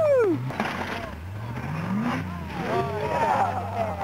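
Rock crawler buggy's engine running under load as it crawls over rocks, revving up with a rise in pitch about a second in, then settling back to a steady low run.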